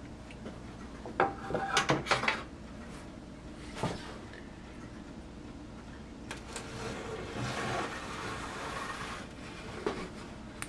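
Light clicks and knocks of hard plastic model parts being handled on a workbench, a quick cluster a second or two in and a single knock near the middle, then a few seconds of soft scraping as a plastic ship's superstructure is slid and lifted off the deck.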